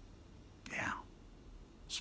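A man whispering a short word a little under a second in, the sound falling in pitch, and another whispered word starting at the very end.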